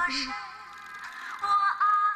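A waltz song playing on an old record player, its melody in held, gently wavering notes that grow louder about a second and a half in.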